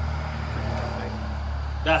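Low, steady engine rumble of a motor vehicle running nearby, under a few quiet spoken words.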